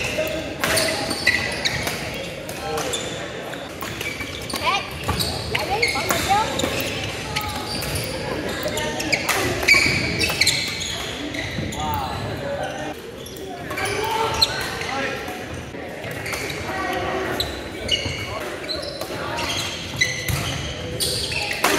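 Doubles badminton play on a hardwood gym floor: repeated sharp racket strikes on the shuttlecock and short squeaks of sneakers on the floor, echoing in a large gym hall.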